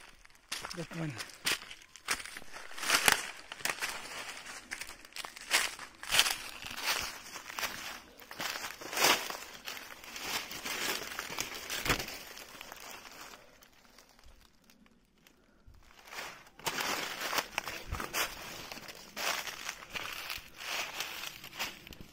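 Dry fallen leaves and twigs crunching and crackling underfoot, with branches rustling against the body, in irregular bursts of steps through forest undergrowth. There is a quieter lull about two-thirds of the way through.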